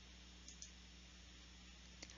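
Near silence: faint room tone with a steady low hum, and two faint clicks about half a second in.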